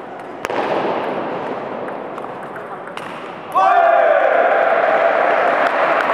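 Table tennis ball hits: a sharp click about half a second in and another near three seconds. Then a loud shout bursts out about three and a half seconds in, and a steady crowd hubbub follows as a player celebrates the point.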